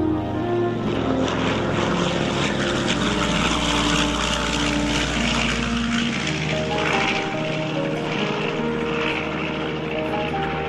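Twin-engine propeller plane making a low pass, its piston engines a dense rush of noise that comes in about a second in and thins out near the end, heard over background music.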